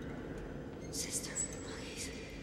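Horror-film soundtrack: a low steady rumble with a brief hissing whisper about a second in.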